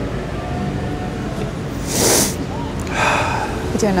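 A man who has been crying sniffles and takes a sharp breath, twice: once about halfway through and again near the end, over a steady background rumble.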